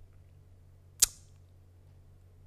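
A single sharp click or snap about a second in, short with a brief ring, over faint steady room hum.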